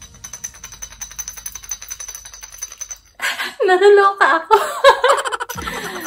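Folded paper slips rattling inside a glass bottle as it is shaken: a fast, even run of light clicks. About three seconds in, a woman's voice breaks in loudly with laughter for a couple of seconds.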